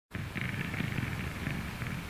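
A low, uneven rumbling noise, with a faint higher hiss over it.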